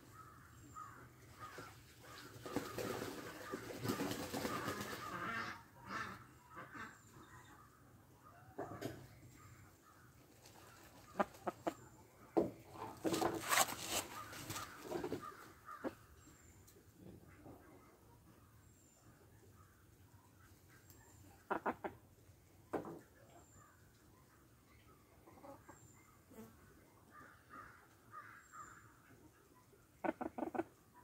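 Hen held in a lap while her curved, deformed beak is trimmed: her feathers rustle and her wings flap in short bouts, with a few sharp clicks, loudest about halfway through.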